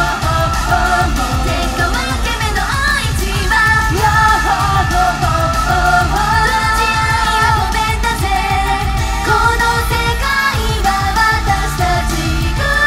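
Japanese idol pop sung live by a girl group over a loud backing track with a steady, driving beat.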